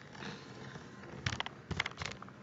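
Camera handling noise: a few short, light clicks and knocks as the camera is moved, a couple just past halfway and a few more near the end, over a quiet room.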